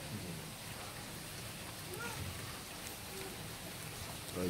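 Steady hiss of background noise with faint voices in the distance.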